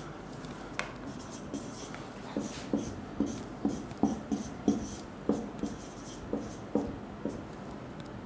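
Marker pen drawing on a whiteboard: a run of short, separate strokes, about two or three a second, as rings and labels are drawn.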